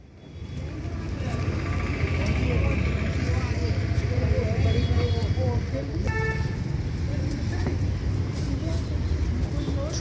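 Street noise: a steady low traffic rumble with people talking, and a short vehicle horn toot about six seconds in.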